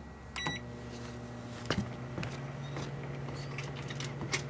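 Emerson microwave oven's keypad beeping once, then the oven starting up with a steady running hum. A couple of clicks come just before two seconds in, and the hum grows louder right after.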